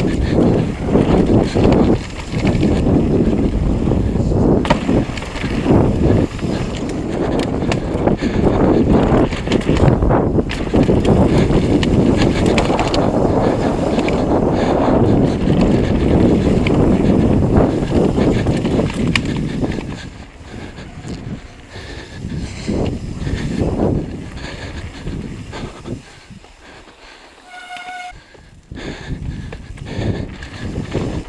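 Mountain bike descending a rocky dirt trail at speed, picked up by a camera mounted on the bike or rider: a dense rattle of tyres, frame and components over rocks and roots. It goes quieter for the last third, and a short squeal comes near the end.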